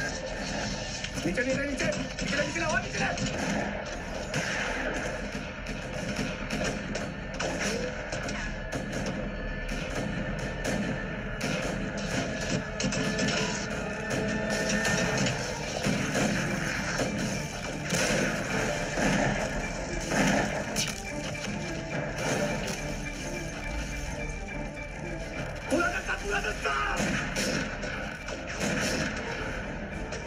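Film battle-scene soundtrack: background music under men's voices, with repeated sharp rifle shots and impacts.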